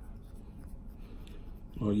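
Scalpel blade shaving thick skin off an interdigital corn between the fourth and fifth toes, making faint, light scratching strokes. A man starts speaking near the end.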